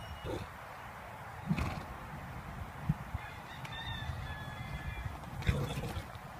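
A young horse rolling in sand: dull thuds and scuffs as its body hits and shifts on the ground, the loudest near the end as it heaves itself up. A thin, high, honk-like call sounds for a second or two about halfway through.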